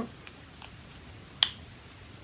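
A single sharp plastic click about a second and a half in, as a Paul & Joe lipstick is snapped into its plastic case, with a couple of faint handling ticks before it.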